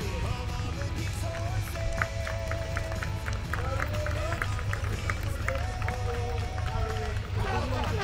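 Music with a run of short, evenly spaced notes through the middle, over indistinct voices and a low steady rumble.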